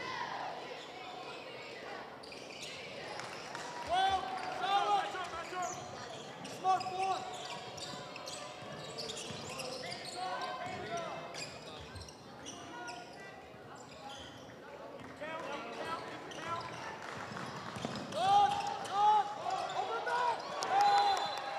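Basketball game in a school gym: a steady crowd murmur with a basketball bouncing on the hardwood and a few thuds. Clusters of short, high sneaker squeaks on the court come several times, loudest near the end.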